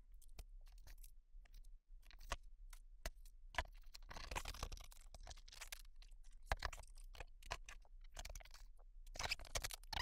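Faint scratching, rustling and clicking of a cardboard box and its plastic-wrapped packing being handled, with a longer rustle about four seconds in and another near the end.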